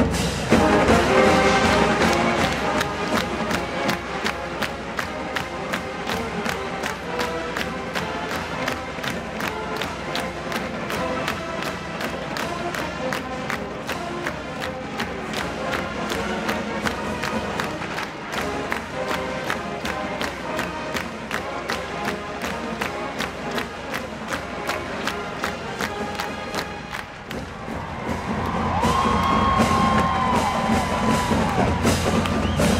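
Marching band playing live in a stadium: a quick, steady drum beat with a crowd cheering. Brass chords sound at the start, and a held brass chord swells in near the end.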